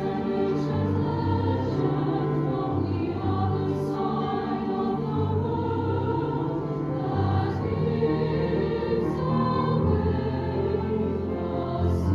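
Large mixed SATB choir singing sustained chords, accompanied by piano and cello. A couple of brief 's' hisses from the sung words cut through.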